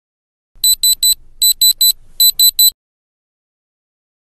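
Handheld electronic diamond tester beeping as its probe is pressed to a diamond pendant: nine short, high beeps in three quick groups of three.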